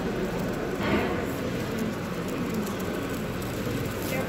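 Steady hubbub of a crowd, with faint indistinct voices and one voice a little clearer about a second in.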